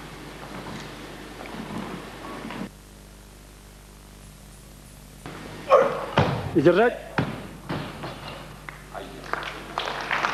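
Loaded barbell with bumper plates dropped onto the lifting platform after a failed lift, thudding and bouncing several times from about six seconds in, with shouts over it.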